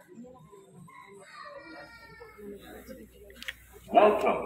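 Faint background voices of people, with one long drawn-out call held for about a second and a half, starting about a second and a half in.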